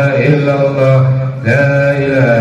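A man's voice chanting Islamic dhikr in long, held melodic phrases, with a short breath break about a second and a half in before the next phrase begins.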